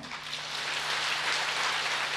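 Audience applauding, a dense even clatter of many hands that swells in over the first half second and then holds steady.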